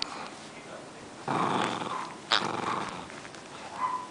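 Rat terrier play-growling while worrying a plush goose toy in its mouth, in two rough bouts of under a second each: the first about a second in, the second just after the middle.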